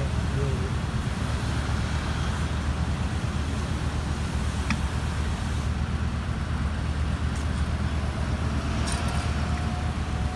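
Car running at low speed, heard from inside the cabin as a steady low rumble with road noise, and a couple of faint clicks.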